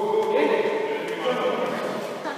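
Indistinct voices of players calling out across a sports hall during a stoppage in a basketball game.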